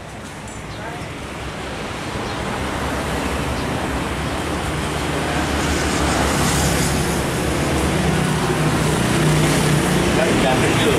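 Street traffic noise, a steady wash of passing vehicles that grows louder throughout, with a low engine hum joining from about six seconds in.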